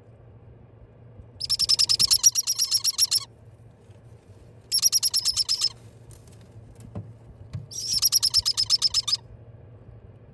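Baby parrot chicks in a brooder chirping in three bursts of rapid, evenly pulsed calls, about ten pulses a second, with a faint low hum underneath.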